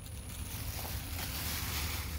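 Steady outdoor background noise: a low rumble with a hiss that swells slightly about a second and a half in.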